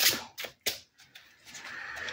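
A deck of Baroque Tarot cards being shuffled by hand, the cards slipping and slapping against each other: about three sharp slaps in the first second, then the shuffle stops.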